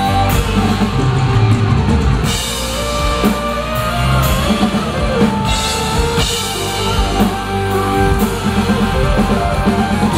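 Live heavy metal band playing an instrumental passage, with a drum kit and electric guitars, heard loud and continuous through a phone's microphone in the crowd.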